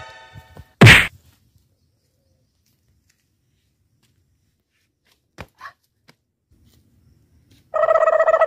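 One loud, sharp thud about a second in as a man's body drops onto the dirt ground, then near silence with a couple of faint clicks. A steady droning tone begins near the end.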